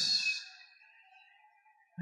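A man's voice ending a word on a hissing 's', its echo dying away within about half a second, then dead silence.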